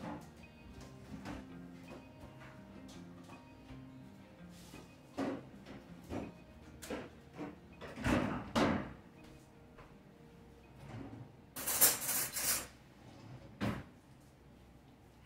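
Soft background music under scattered knocks and clunks of kitchen doors and drawers being opened and shut, with a louder burst of noise about twelve seconds in and a sharp knock just before the end.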